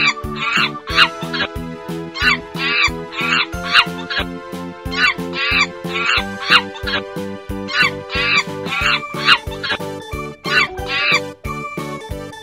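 Monkey calls, short high wavering cries coming in groups of two or three about every second and a half, over background children's music with a steady beat.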